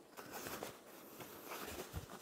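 Faint handling noise: quilting cotton and batting rustling as the layers are folded and held together with plastic sewing clips, coming and going in soft, uneven swells.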